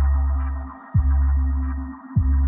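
Hip-hop beat without vocals: long, deep bass notes, a new one striking about a second in with a quick downward pitch drop at its start, under a faint held synth tone.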